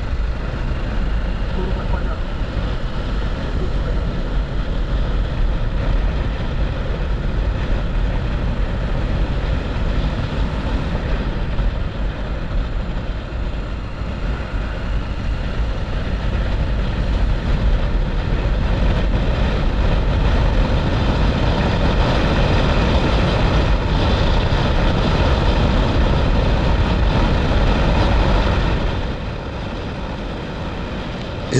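Wind rushing over a camera on a moving motorcycle at road speed, with the bike's engine running underneath. The loud steady rush drops off suddenly about a second before the end.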